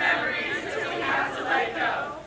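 A large group of girls' voices chanting a song together in a hall, in short phrases.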